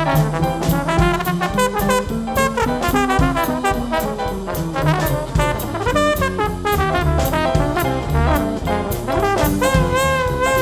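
Two trombones playing a jazz duet line over piano, upright bass and drums, with steady cymbal strokes keeping the swing time. Near the end a trombone holds a long note with vibrato.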